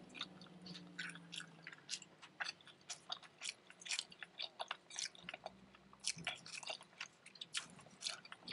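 Wet chewing of a breakfast crunchwrap (egg, hash brown and potato in a tortilla), heard as irregular mouth clicks and smacks, a little busier in the last couple of seconds.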